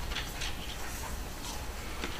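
Quiet meeting-room tone with a steady low hum and a few faint rustles and clicks in the first half second.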